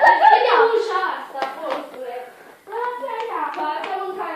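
A young voice making drawn-out vocal sounds without clear words, in two stretches with a short gap between, with a few light taps and clicks among them.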